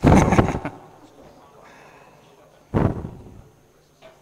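Two loud knocks close to the microphone, the first a quick cluster of bangs, the second about three seconds in, dying away quickly.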